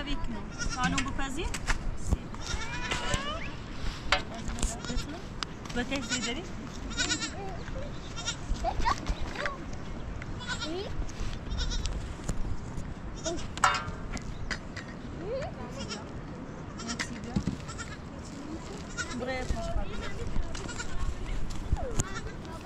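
Goats bleating now and then, with occasional sharp clicks and knocks.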